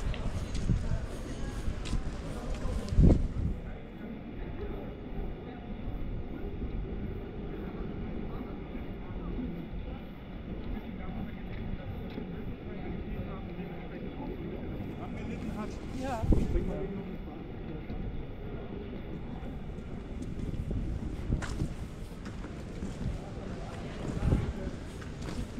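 Pedestrian-street ambience with wind rumbling on the microphone and passersby talking now and then. Two louder knocks stand out, about three seconds in and again about sixteen seconds in.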